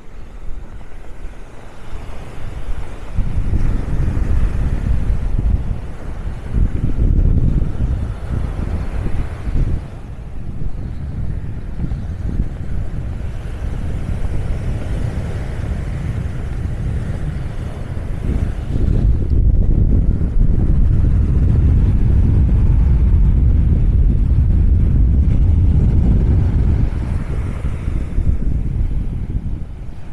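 Wind buffeting the microphone in gusts: a low rumble that swells about three seconds in and is strongest in the second half, over a fainter wash of breaking surf.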